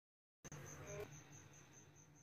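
Faint background noise with a low hum and a high-pitched chirp pulsing about five times a second. It starts abruptly out of dead silence about half a second in, with a single click about a second in.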